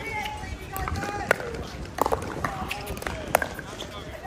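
Pickleball paddles hitting the hollow plastic ball during a doubles rally: several sharp pops, roughly one every second, with voices talking around the court.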